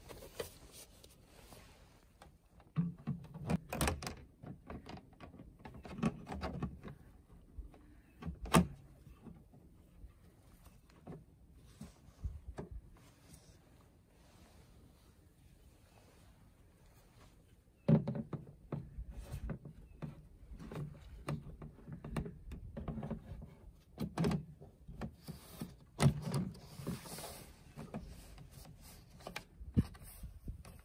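Plastic fridge-vent parts on a motorhome's side wall being handled: the winter cover is worked out of the vent frame and the slatted grille is fitted in its place, making short plastic knocks, clicks and rattles. There is one run of them a few seconds in, a quieter pause, then a longer run from a little past halfway.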